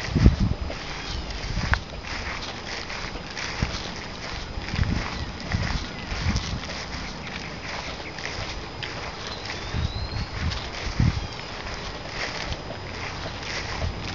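Outdoor ambience on a moving handheld camcorder: irregular low bumps of wind and handling on the microphone, the strongest right at the start, over a steady high hiss, with a faint rising whistle a little past the middle.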